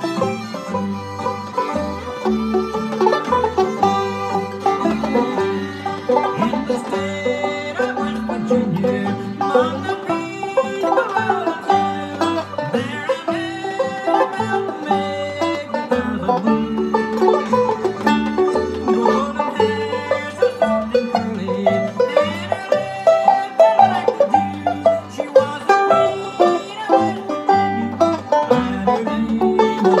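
Banjo picked in bluegrass style, running pentatonic licks, over a recorded bluegrass backing track with a bass line.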